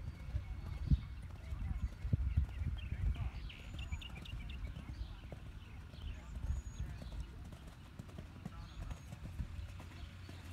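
A horse's hooves thudding irregularly on sand arena footing as it canters and jumps a show-jumping course, heaviest in the first few seconds.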